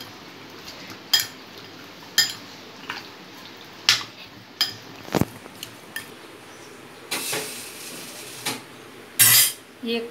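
Steel spoon clinking and scraping against a glass bowl while raw chicken pieces are mixed with turmeric and salt. The clinks are sharp and irregular, about one a second, one of them ringing briefly. Near the end come a few longer, noisier scrapes, the loudest just before the end.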